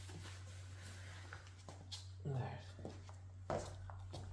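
Quiet room tone with a steady low hum, a brief murmur of a voice a little after two seconds in, and a soft knock about three and a half seconds in.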